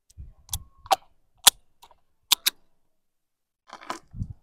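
Snap-on plastic lid being pried off a small plastic food tub: a series of sharp plastic clicks and snaps, about five in the first two and a half seconds, then a short rattle of plastic near the end.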